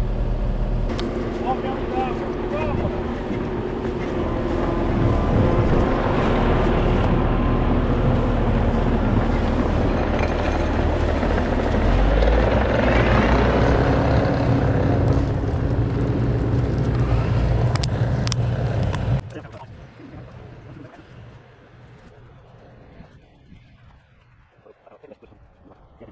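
An engine running steadily, then cutting off suddenly about nineteen seconds in, leaving only faint sound.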